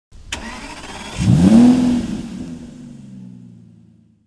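Car engine sound effect for an intro logo: a sharp click, then an engine revving up once, its pitch rising quickly and levelling off into a drone that fades away.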